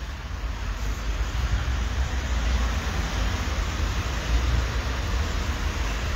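Steady city street traffic noise with a deep, uneven low rumble and no distinct events.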